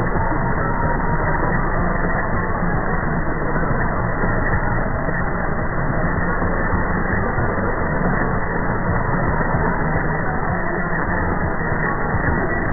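Weak medium-wave AM broadcast on 747 kHz heard through a shortwave receiver: music buried in steady static and interference, with the audio cut off above about 2 kHz by the narrow AM filter.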